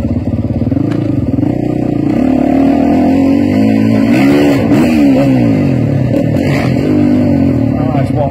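Motocross dirt bike engines revving as the bikes ride around the arena, the pitch rising and falling again and again. Around the middle, two engines can be heard at once, one rising while the other falls.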